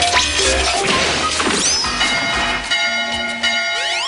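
Cartoon background music with sound effects: a crash near the start, then falling whistle-like glides about a second and a half in and held tones through the second half.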